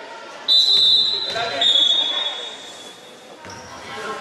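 Referee's whistle blown in one long blast of about three seconds, starting about half a second in and dropping slightly in pitch partway through.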